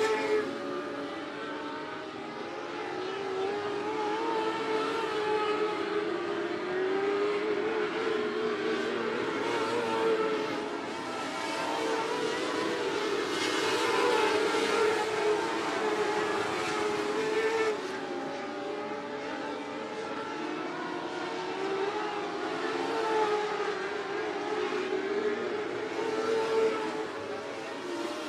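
A pack of dirt-track modified race cars running laps on a clay oval. The engine note wavers and the sound swells and fades as the cars circle the track, loudest about midway through as they pass nearest.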